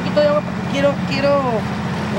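Brief bits of talking over a steady, low mechanical hum like a running motor.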